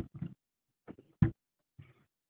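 The end of a man's sentence, then a few short non-word vocal sounds over a call line. The loudest is a brief, sharp one a little after a second in, like a grunt or a cough.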